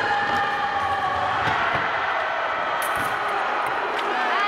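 Steady ambience of a large competition hall, a dense wash of crowd and room noise with faint drawn-out tones drifting slowly lower, and a few sharp taps.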